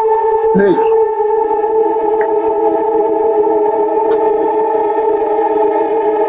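Background film score: a sustained synthesizer drone of several held notes, with a short sliding, voice-like sound about half a second in.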